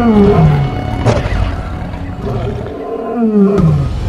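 Lion roaring: two long calls that fall in pitch, one at the start and one about three seconds later, with a sharp knock about a second in.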